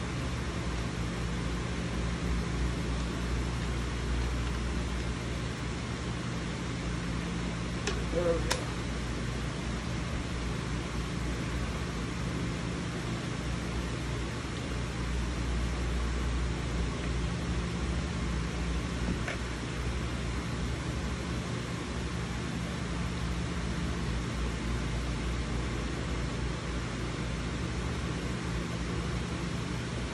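A steady low mechanical hum with an even hiss, like a fan or air conditioner running, with a couple of brief clicks about eight seconds in.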